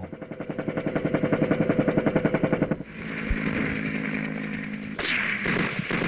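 Battle sound from archival Vietnam War footage. A fast, even rattle of about ten pulses a second swells and cuts off just under three seconds in, a steady drone follows, and a sharp crack comes about five seconds in.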